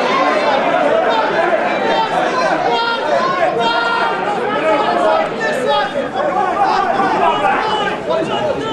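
Many people's voices talking and calling over one another, a steady babble with no single voice standing out.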